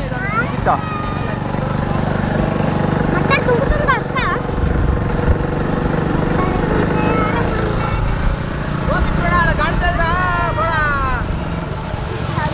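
Small commuter motorcycle engine running at a steady speed while being ridden along a dirt road, with voices calling out over it at times.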